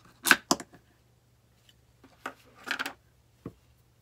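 A jar lid being pulled off, two sharp clicks close together, followed by a short rustle of handling and a single light tap near the end.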